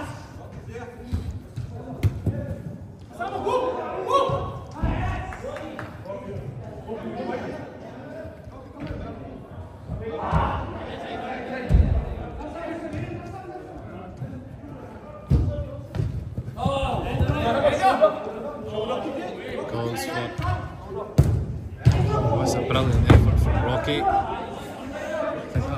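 Indoor five-a-side football in a large, echoing hall. Players shout and call to each other, and the ball is kicked and thuds off the boards in scattered hits.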